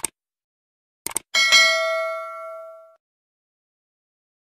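Subscribe-button animation sound effect: a short click, then a quick double click about a second in, followed by a bright bell ding that rings out and fades over about a second and a half.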